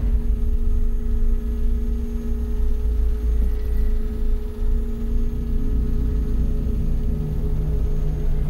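Cinematic intro of a music video's soundtrack: a deep, steady rumble under sustained held tones, with a lower tone joining about six seconds in.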